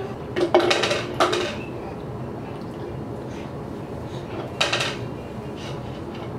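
Metal fork clinking and scraping against an opened tin can while scooping out its contents, in a flurry during the first second and a half and once more near five seconds.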